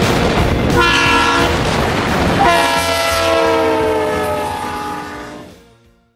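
Multi-chime air horn of a warbonnet-painted diesel freight locomotive sounding two blasts over the train's rumble. The first is short, about a second in; the second is held for about three seconds, its chord sagging slightly in pitch. The sound fades out near the end.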